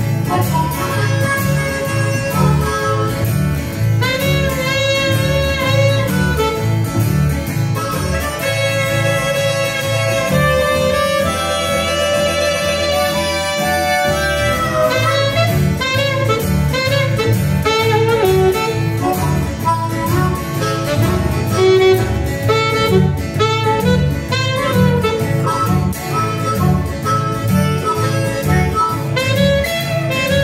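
Small acoustic band playing an instrumental break: saxophone and harmonica over a steady plucked double-bass line and acoustic guitar.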